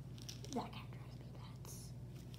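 A child whispering a single word about half a second in, quietly, over a low steady hum.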